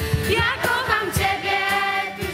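A group of girls' voices sing a hymn together, accompanied by a strummed acoustic guitar.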